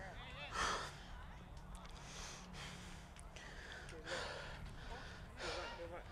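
A rugby league referee breathing heavily into a body-worn microphone: four short breaths, about one every second and a half, over a low rumble of mic noise, with faint voices in the distance.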